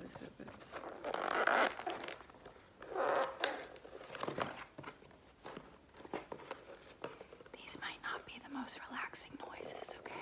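Cardboard shipping box being handled and opened by hand: two longer scraping, tearing rustles of cardboard in the first few seconds, then small clicks and taps.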